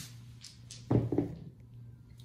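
A pair of dice thrown onto a felt craps table, landing with a few soft knocks as they tumble to rest; the loudest knock comes about a second in.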